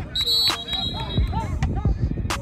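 A referee's whistle blown in one long, steady blast, cutting off about halfway through. Voices are shouting and music is playing underneath.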